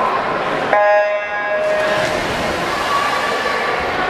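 Electronic starting horn of a swim race sounding one steady tone about a second in, lasting about a second. It is followed by the splashing of swimmers diving in and a steady wash of crowd noise.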